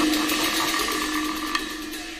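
Teochew opera accompaniment dying away: one held note over a ringing wash that fades steadily, with a single sharp click about one and a half seconds in.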